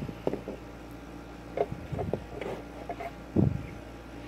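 Light handling noises on a workbench: a few small taps and rustles as sticky tape is pressed over LEDs on a circuit board, with a duller knock near the end. A steady low hum runs underneath.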